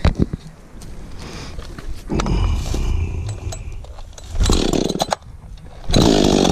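Freshly rebuilt chainsaw being picked up and pull-started: two short stretches of sputtering engine noise, the second a little louder, before it catches and runs at the very end.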